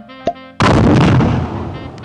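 Exploding trick cigar going off: a short click, then a sudden loud bang about half a second in that dies away over about a second.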